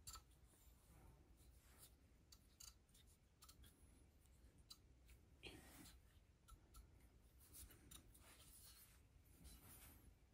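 Near silence with scattered faint clicks and brief rustles: hands handling a steel connecting rod and small parts on a workbench.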